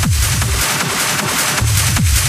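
Hard techno DJ mix with a fast, pounding kick drum, about four beats a second. The kick and bass drop out for about a second midway, leaving only the upper layers, then come back in.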